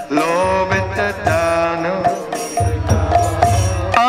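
A man singing a devotional Vaishnava song in long, wavering melodic lines with vibrato and held notes, over a low pulsing accompaniment.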